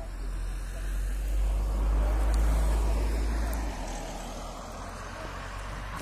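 A car passing on a country road: engine and tyre noise swells over about two seconds, then fades away.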